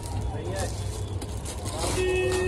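Busy street ambience: a steady low rumble of traffic with faint, indistinct voices in the background.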